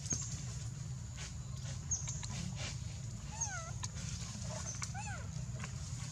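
A macaque giving two short wavering cries, each rising and falling in pitch, the first a little past halfway through and the second about a second and a half later, over a steady low rumble.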